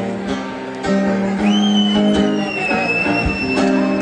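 Acoustic guitar played live, with picked notes and chords ringing on. From about a second and a half in, a thin high whistle-like tone sounds over it.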